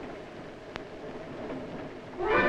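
Faint hiss and crackle of an early-1930s film soundtrack, with one sharp click about three-quarters of a second in as a phonograph on the counter is set going.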